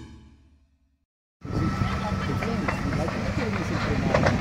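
A logo jingle fades out into a moment of silence, then a field recording cuts in: several people's voices talking over a steady low hum and background noise.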